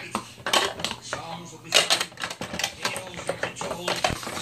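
Plastic dog puzzle toy clacking and rattling as a puppy noses and paws at its sliding lids and flaps, a quick irregular run of hard plastic clicks.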